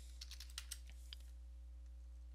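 Computer keyboard keys being typed: a quick run of faint key clicks in the first second, then one more keystroke just after a second in.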